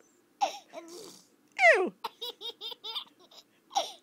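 A toddler laughing, with a quick run of about five short laugh bursts just after the middle, set off by an exaggerated, falling 'Ew!'.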